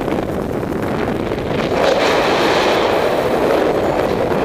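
Wind rushing over the microphone of a paraglider in flight: a steady buffeting roar that grows louder and brighter about halfway through.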